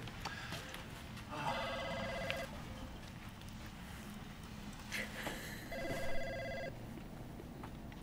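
Office telephone ringing twice, about four seconds apart, each ring an electronic trill about a second long.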